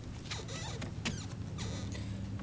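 A few short, scratchy rustles of a person moving close to the microphone, over a steady low background hum.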